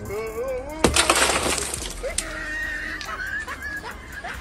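A car's side window shattering about a second in: one sharp crack, then about a second of glass crackling and falling apart. Hot water poured onto the frozen glass cracks it by thermal shock.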